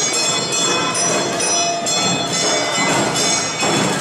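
Live Awa odori festival accompaniment playing steadily, with the metallic ringing of a struck hand gong (kane) carried over the band.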